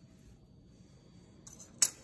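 A metal kitchen utensil knocking once on a hard surface: a single short, sharp clink near the end, just after a faint rustle, over quiet room hum.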